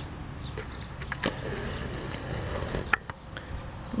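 Low rumbling wind noise on the camera microphone, with a few sharp clicks, one about a second in and one near three seconds.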